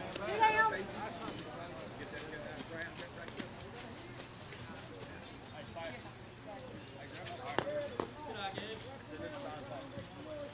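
Distant voices of players and spectators across an open ball field, with a loud shout or call just after the start. A few sharp knocks cut through, the clearest about three quarters of the way in.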